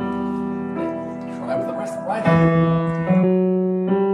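Grand piano played slowly: held notes and chords that change about once a second, with a louder chord struck about halfway through. It is a careful practice run of a chromatic-thirds passage.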